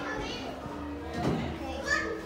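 Young children's voices and play noise, no clear words, over a low steady hum.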